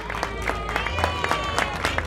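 Audience applauding with many scattered hand claps, with crowd voices underneath.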